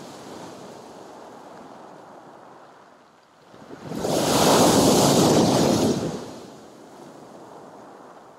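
Sea surf on a shingle beach, with a wave crashing against a concrete pier footing. A steady wash of water builds into one big breaker about four seconds in, the loudest moment, which then dies back.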